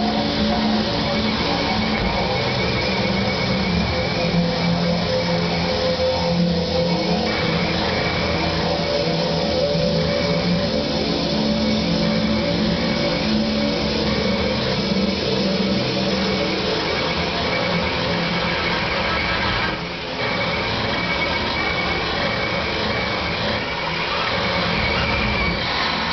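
Live electronic noise music: a dense, steady wall of noise with held low drones and tones layered through it, dipping briefly about twenty seconds in.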